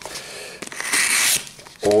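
Hobby scalpel blade slicing through the paper of a padded mailing envelope: a scratchy cut of a little under a second, starting about half a second in, going through easily.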